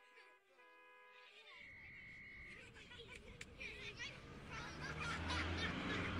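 Outdoor ambience fading up. First come a few short chirping animal calls. Then a steadily rising wash of street noise, with a brief steady high whistle and a low hum that grows louder toward the end.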